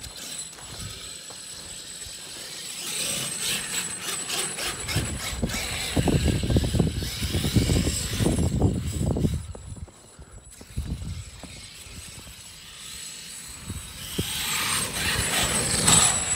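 Traxxas X-Maxx RC monster truck's brushless electric drive whining and its tyres churning through snow, swelling and fading as the truck speeds around. A heavy low rumble with rapid knocking dominates the middle few seconds, then it goes quieter before a second run builds near the end.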